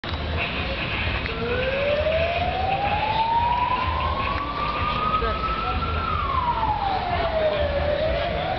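A siren wailing: a single tone rises slowly for about five seconds, falls more quickly, and begins to rise again near the end.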